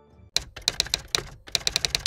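Typing sound effect: a quick, irregular run of sharp keystroke clicks, starting about a third of a second in.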